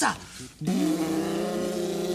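A steady humming tone, several pitches held together, starting just over half a second in.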